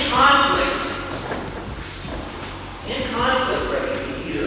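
A man's voice speaking in two short bursts, near the start and again about three seconds in, with no words that can be made out.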